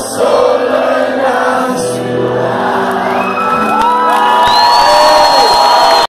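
Live rock band playing loudly in a club with singing. From about halfway through, the audience joins in with rising whoops and cheers that grow louder toward the end.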